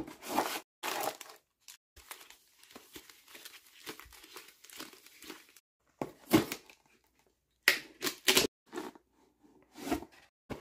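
Cardboard box parts and packaging of a Pokémon Vivid Voltage Elite Trainer Box handled with gloved hands: crinkling, rustling and short scrapes. A soft stretch of rustling in the middle gives way to a few louder knocks and crinkles near the end.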